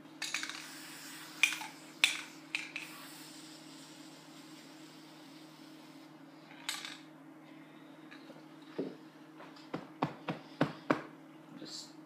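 Aerosol spray-paint can spraying red paint onto cloth trousers, with a short hiss just past halfway and fainter spray near the start. Scattered sharp clicks and taps come from handling the can on the workbench, with a cluster of them near the end, over a steady low hum.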